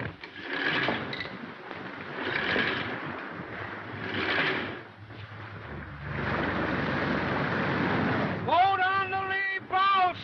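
Storm wind and sea noise surging and easing in gusts about every second and a half, then holding steady. Near the end a man's drawn-out shouted calls rise and fall over it.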